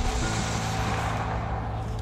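A car driving off, its noise fading over about a second and a half, over held notes of background music.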